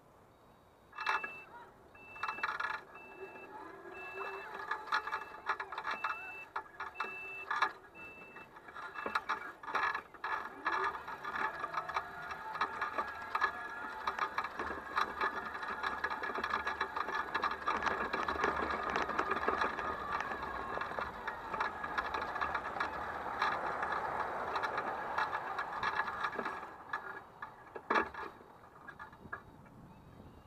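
S12X Vita Monster electric mobility scooter's reversing beeper sounding in a regular run of short beeps for about seven seconds as the scooter backs up, with a few knocks. Then its drive motor whines steadily and the scooter rattles as it drives over grass.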